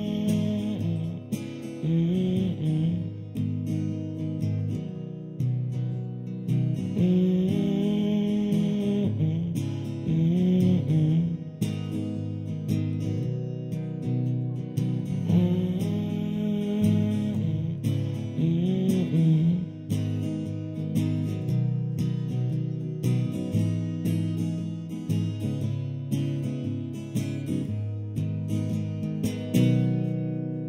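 Cutaway acoustic guitar strummed steadily through the chords of a song, with a man's voice singing long wordless phrases over it at times.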